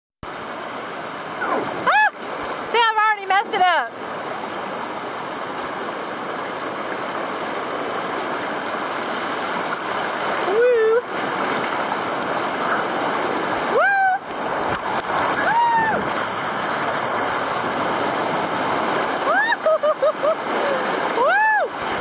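Shallow, rocky river water rushing and splashing steadily around an inner tube floating down it. Short whooping yells that rise and fall in pitch break in over it a few times: two near the start, one around the middle, and a cluster near the end.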